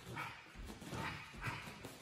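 Bare feet scuffing and sliding on a padded gym mat during a footwork drill of switching stance, sliding and pivoting, in several short scuffs about half a second apart.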